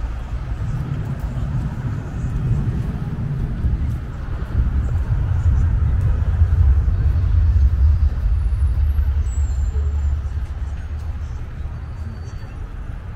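Low rumble of road traffic, swelling about four seconds in as a heavy vehicle passes close by, then fading near the end.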